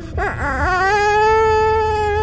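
Infant crying: a short wavering whimper, then one long, steady wail.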